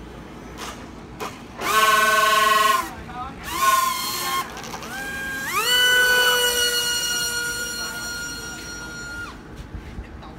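Electric motor and propeller of an RC foam jet model, with a high pitched whine. It spins up in two short bursts and winds down again, then is throttled up in steps to a steady high whine that drops away near the end.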